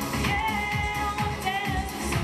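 A woman singing into a microphone over an Indian pop song with a steady beat; the sung line is held with a wavering vibrato.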